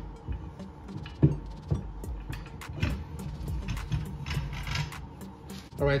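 Irregular metal clunks and scrapes as a bike rack's steel hitch bar is slid into a 2-inch trailer hitch receiver and its pin holes are lined up, the sharpest knock about a second in. Background music plays underneath.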